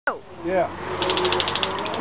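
A handheld stun gun (taser) firing from about a second in: an electric crackle of rapid clicking pulses, about fifteen a second.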